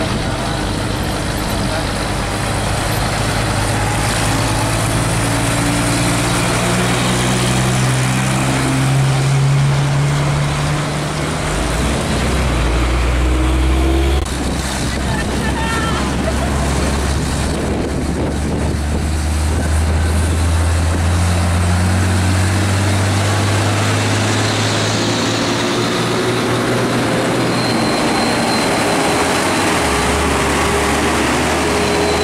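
Diesel engines of loaded heavy trucks pulling trailers, accelerating as they pull away; the engine note climbs steadily in pitch. The first is a Mitsubishi Fuso; after a sudden change about fourteen seconds in, a second truck's engine climbs the same way.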